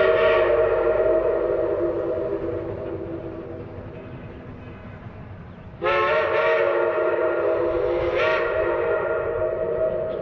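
Steam locomotive whistle sounding a chord of several steady tones. One long blast dies away slowly, then a second blast starts sharply near the middle and holds until the end.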